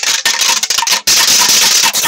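Empty plastic protein shaker bottle shaken hard with its mixing ball inside, the ball rattling loudly against the walls. The shaking stops briefly about a second in, then resumes.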